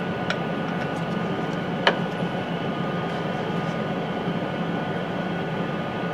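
Steady fan hum with a few faint steady tones, and a few light clicks, the sharpest about two seconds in, as a glass sample tube with a metal end cap is set into the polarimeter's cradle.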